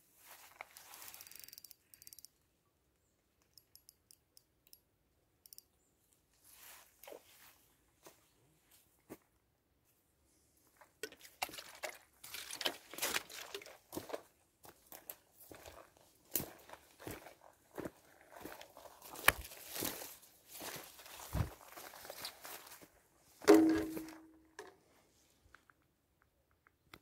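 Irregular crunching and rustling from close handling: a plastic water bottle crinkling in the hand and dry grass and twigs crackling underfoot, in a dense run of short bursts through the second half, with one sharp, louder knock near the end.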